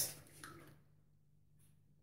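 Quiet bathroom room tone with a faint steady low hum, after a spoken word fades out in the first moment; one brief faint soft tick comes past the middle.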